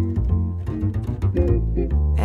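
Instrumental fill between the vocal phrases of a jazz ballad: a plucked double bass playing low notes, with lighter plucked notes above it.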